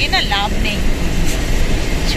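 Steady engine and road noise inside the cabin of a moving car, with a spoken word at the start.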